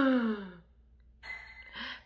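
A woman's voiced sigh, falling in pitch and trailing off about half a second in, followed after a short pause by a softer breath.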